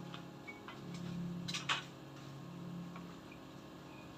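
Aquarium air pump running with a steady low hum, with a few scattered sharp clicks, the loudest a pair about one and a half seconds in.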